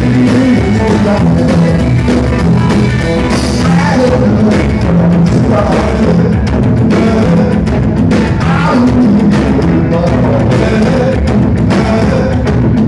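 Live rockabilly band playing loudly: electric guitar, upright double bass and drum kit.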